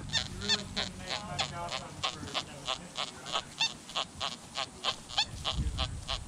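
XP Deus metal detector with an X35 coil giving full-tones audio at 17 kHz as the coil sweeps over a silver quarter buried 10 inches deep among iron: a quick, irregular run of short beeps and tones.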